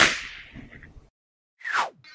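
A sharp crack that dies away over about a second, then a short whoosh falling in pitch near the end: edited sound effects in a podcast intro.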